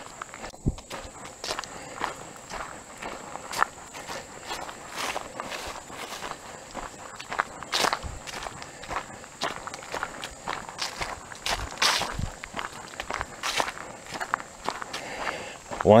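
Footsteps walking at a steady pace on a dirt forest road, about two steps a second.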